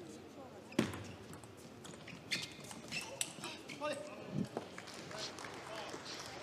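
Sharp clicks of a table tennis ball bouncing and being struck, the loudest about a second in, over faint background voices.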